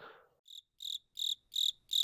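Cricket chirping sound effect: a string of short, even chirps at about three a second, starting about half a second in. It is the stock comic cue for an awkward silence.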